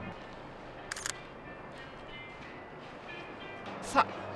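Camera shutter firing: a quick double click about a second in, then a sharper single click just before the end.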